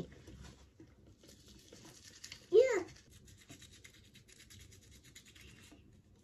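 Manual toothbrush scrubbing a child's teeth: faint, quick, scratchy brushing strokes. One short voiced sound breaks in about two and a half seconds in.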